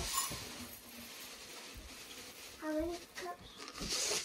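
Mostly quiet room tone: a single soft click at the start and a faint hiss fading over the first second, then two brief voice sounds about three seconds in.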